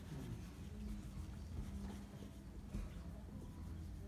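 Faint soft rubbing of palms rolling Play-Doh into a thin rope on a tabletop, over a steady low room hum, with one small knock near the end.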